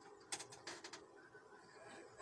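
Faint handling noise: a sharp click about a third of a second in, then a short cluster of clicks and creaks just before a second in.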